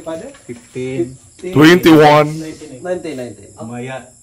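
People talking, with one voice loud and drawn out about a second and a half in, and a thin steady high-pitched hum underneath.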